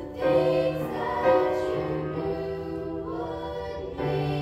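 Grand piano playing a slow hymn while a group sings along, notes held about a second each.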